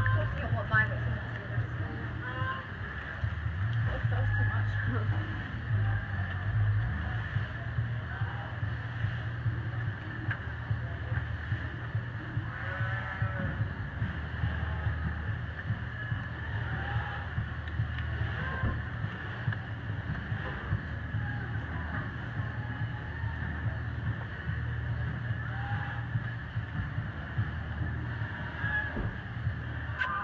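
Steady low hum with indistinct voices of people talking in the background throughout.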